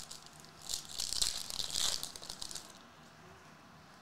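Foil trading-card pack wrapper crinkling and tearing as it is ripped open, a rustling burst of about two seconds starting a second in.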